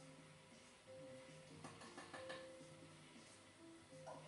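Near silence: a faint television playing in the room, with a few soft held music tones and some light clicks.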